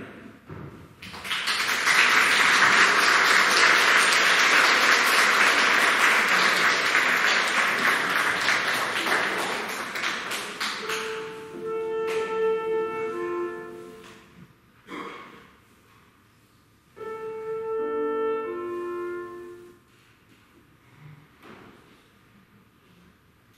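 Audience applauding for about ten seconds, the loudest sound here. Then a clarinet plays two short runs of held notes, tuning before the piece.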